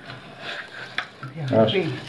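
Faint wet scraping and stirring of a hand scooping limescale sludge out of the inside of an electric water heater tank, with a sharp click about a second in. A voice speaks over the last part.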